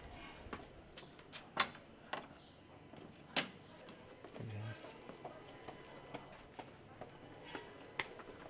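Scattered sharp clicks and knocks, the loudest about one and a half and three and a half seconds in, with a short dull thump about four and a half seconds in, over a quiet outdoor background.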